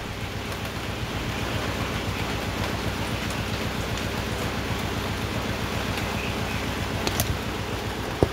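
A steady, even hiss throughout, with one sharp click near the end as pliers work a scotch-lock wire connector on the car's wiring harness.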